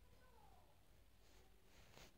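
Near silence: faint room tone, with a faint falling tone in the first half-second.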